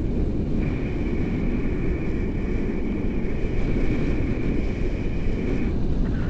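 Airflow buffeting a camera microphone in flight under a tandem paraglider: a loud, steady rumble. A thin, steady high tone sounds over it, starting about half a second in and stopping just before the end.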